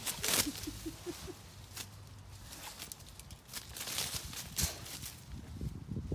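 Apple-tree branches and leaves rustling and shaking as a dog pulls at them, with irregular sharp crackles, the loudest just after the start. A quick run of about five short squeaks comes in the first second and a half.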